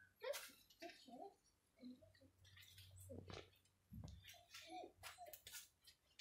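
Near silence, with faint scattered fragments of voice and a few soft clicks.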